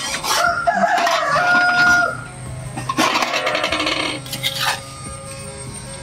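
A rooster crowing, a loud call held at a steady pitch for under two seconds, then a shorter, rougher call about three seconds in.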